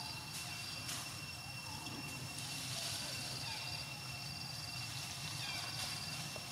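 Outdoor forest ambience: a steady high insect drone holding two pitches, with a few faint chirps and light clicks over it.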